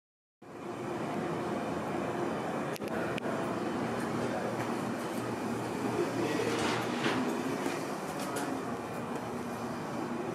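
A steady mechanical hum with a few faint clicks. It starts suddenly after a moment of silence.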